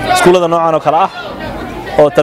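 Speech only: a man talking, his voice dropping away about a second in.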